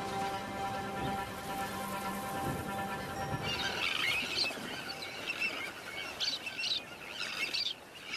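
Soft background music for the first few seconds, then a sandwich tern breeding colony calling: a busy run of high, overlapping cries from chicks begging for food and the adults that feed them.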